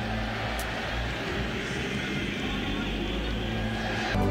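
Steady murmur of a large stadium crowd, an even wash of many voices with no single sound standing out.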